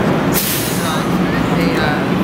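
Sightseeing bus engine running steadily amid city traffic, with a sharp hiss of air about half a second in, typical of the bus's air brakes venting as it comes to a stop.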